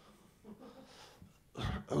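A near-quiet lull with faint room sound. About one and a half seconds in comes a short, breathy vocal sound from the comedian, close on the handheld microphone, just before he speaks again.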